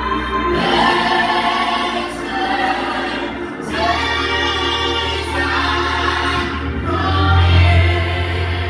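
A choir singing a slow gospel song over held low bass notes, the chord changing every few seconds.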